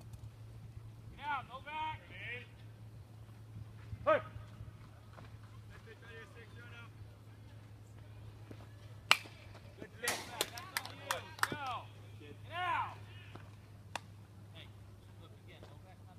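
Baseball players shouting chatter at intervals over a steady low hum, with one sharp crack about nine seconds in, the loudest sound, followed by a quick run of sharp clicks.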